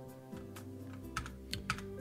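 Computer keyboard being typed on in quick, irregular key clicks, over soft background music with held tones.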